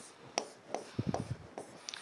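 A pen drawing lines on a writing board: a string of short scratching strokes and taps, a few per second.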